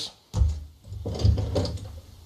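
Clicks and low handling thumps as a handheld thumb-trigger archery release aid is worked by hand, its trigger pressed and its jaws opening.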